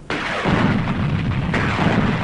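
Gunfire and blasts in dense, continuous succession with a heavy low rumble, cutting in suddenly just after the start.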